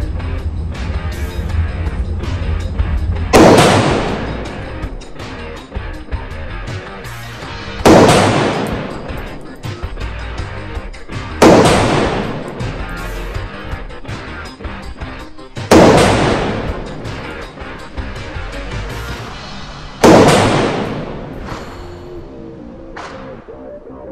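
Romanian AK rifle fired five single shots, spaced about four seconds apart, each crack followed by an echo that dies away over about a second in the indoor range. Background music plays underneath.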